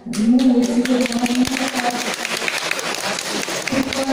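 Audience applauding in a hall: a sudden start of many hands clapping, with a voice heard over it in the first couple of seconds.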